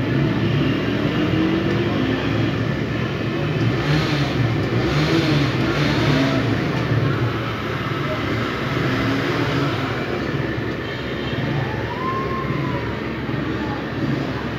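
Steady background of road traffic, with vehicle engines running and passing, and faint voices mixed in. A short rise-and-fall in pitch comes near the end.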